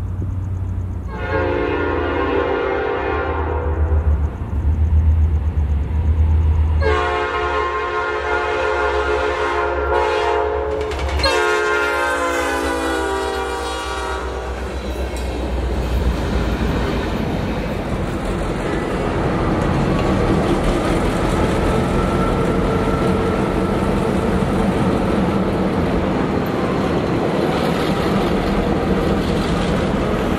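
A Norfolk Southern freight locomotive's air horn sounding three long blasts, the last one dipping slightly in pitch. Then a steady rumble of the train running by.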